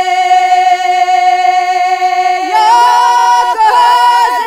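A song sung in voices: one long note held steady for about two and a half seconds, then more voices come in with wavering, ornamented lines.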